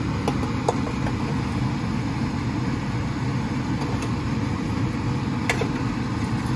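Steady low hum of a kitchen fan running, with a few light clicks of a fork and spatula against a metal baking sheet as breaded pork chops are turned.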